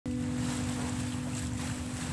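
Ocean water and wind rushing steadily, with a low steady held tone underneath.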